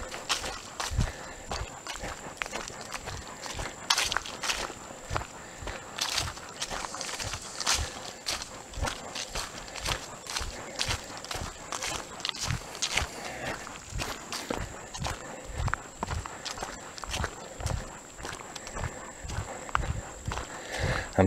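Footsteps of a person walking at a steady pace on a dirt trail scattered with leaves, with occasional sharper rustles.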